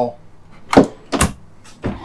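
Wooden dresser drawers on metal slides being pulled open and pushed shut: three short knocks, starting about three-quarters of a second in and about half a second apart.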